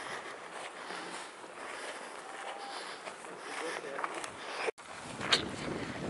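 Steady outdoor noise of hikers walking on a grassy field path, with faint voices in the background. The sound drops out for a moment about three-quarters of the way through.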